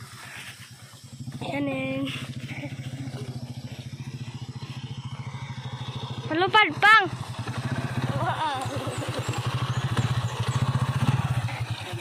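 A small motorcycle engine running at low revs as it is ridden slowly over soft, muddy grass, its note growing louder from about eight seconds in. Voices call out briefly, with two loud cries about halfway through.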